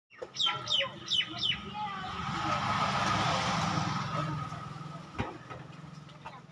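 A vehicle going by on the road, its noise swelling to a peak about three seconds in and fading, over a low steady engine drone. Four quick falling bird calls come at the start.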